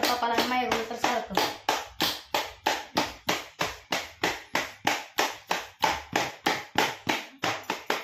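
Rapid, regular knocks, about three a second, each sharp and short, with a woman's voice over the first second.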